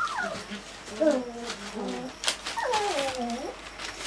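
A spaniel whining in several cries that fall in pitch, the longest near the end.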